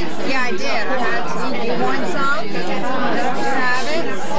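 Many voices talking at once in a busy restaurant dining room: indistinct, overlapping chatter.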